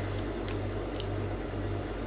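A few faint soft clicks of drinking and swallowing from a glass over a low steady hum.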